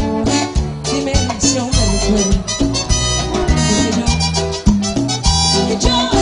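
Cumbia band music: an instrumental passage with a strong moving bass line and a steady dance beat.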